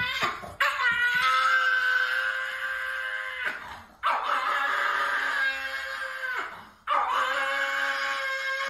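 A dog howling in three long, steady-pitched cries, each held for a few seconds with a short break between them; it sounds like a cry.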